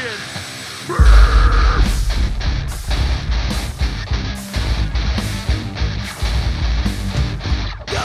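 Live heavy rock band playing loud in a club: distorted electric guitars, bass and drums. After a quieter first second the full band crashes in together.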